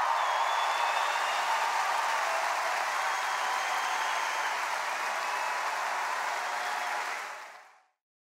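A large audience applauding steadily, fading out near the end.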